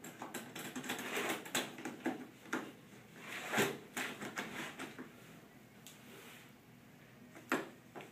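A cat pawing at the metal wire door of a plastic pet carrier, rattling it in quick, irregular clicks for about five seconds, then one more click near the end, as it tries to get the door open.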